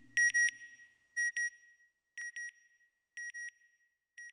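Electronic double beeps, one pair about every second, each pair fainter than the one before, like an echo dying away.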